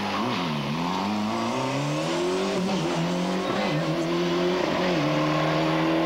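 Ford Escort RS Cosworth rally car's turbocharged four-cylinder engine under hard driving on a tarmac stage: the engine note dips about half a second in, climbs for a couple of seconds, wavers, then steps down about five seconds in and holds.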